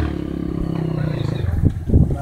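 Dirt bike engine idling steadily, with two sharp low thumps near the end.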